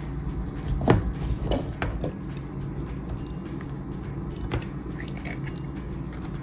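Hand-held crank can opener cutting around the lid of a tin can: irregular sharp metallic clicks and scrapes as the serrated wheel is cranked along the rim.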